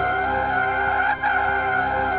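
Animated porg screeching: one long, high, wavering cry that breaks off for a moment a little past a second in and starts again.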